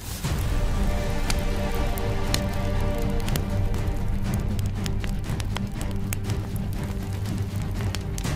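Background music of sustained low tones, over the irregular crackling and popping of small flames burning dry grass and leaf litter.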